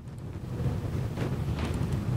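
A low, steady rumble of room background noise, like wind on a microphone, with a couple of faint brief sounds near the middle.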